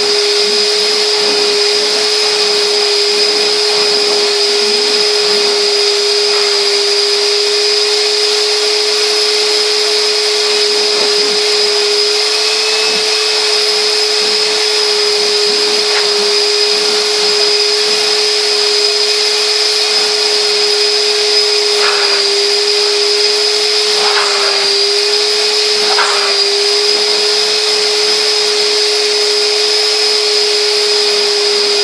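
Numatic George GVE 370-2 wet-and-dry vacuum running steadily with a constant motor whine. Its wet pickup nozzle is sucking spilled water up out of a carpet, with a few brief sharper noises in the latter half.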